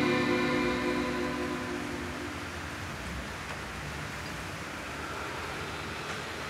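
The song's final chord, guitar-led, rings out and fades away over about two and a half seconds, leaving a steady low hiss of room noise.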